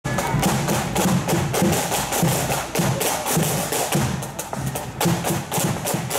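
Marching band's snare and bass drums playing a steady march beat: rapid sharp snare strikes over a regular low bass-drum thud.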